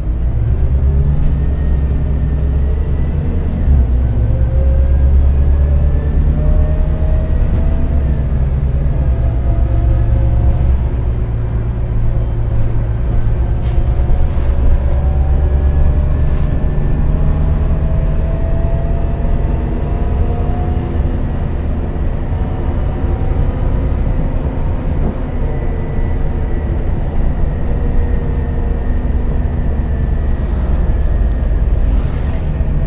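Renault Citybus 12M city bus on the move, heard from inside the passenger cabin: a steady low engine and road rumble, with a drivetrain whine that rises in pitch several times as the bus picks up speed.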